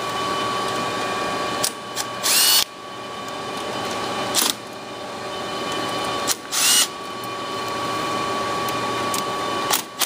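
Cordless drill-driver backing screws out of the power supplies' sheet-metal mounting tray in several short bursts, the longest about half a second, over a steady background hum.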